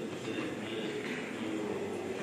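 Indistinct murmur of many people chatting at once in a large, reverberant church sanctuary, steady with no single voice standing out.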